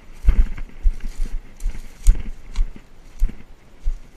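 Footsteps over dry dirt and scrub, irregular thumps roughly twice a second with brush rustling between them.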